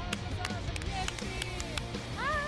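Hands clapping: a run of quick, sharp claps.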